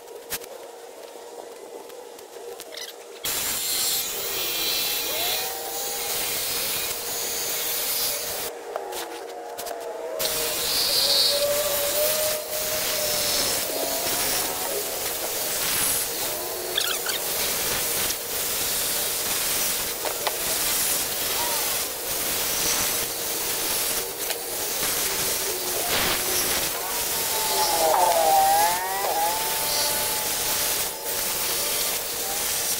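Jigsaw cutting notches in plywood. It starts a few seconds in, stops briefly about a third of the way through, then cuts steadily again.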